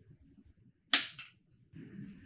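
Two sharp, crisp clicks about a quarter second apart, the first louder, from hands handling a Canon EOS R6 Mark II camera body. A soft rustle of handling follows near the end.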